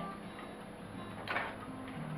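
Silicone spatula stirring soaked bread in an enamel pot, with one short scrape a little over a second in, over a steady low hum.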